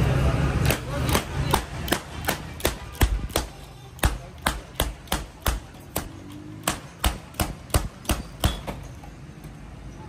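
A quick run of about twenty sharp knocks, two to three a second, as glass marble-neck (Codd) soda bottles are popped open one after another at a soda stall; the run stops near the end.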